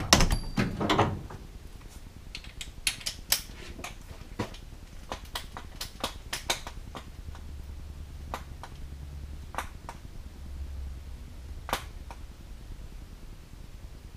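Irregular clicks and metallic clinks of hand tools being handled during engine work, loudest in a short clatter at the start, then scattered single clicks with a faint low hum in the background for a few seconds.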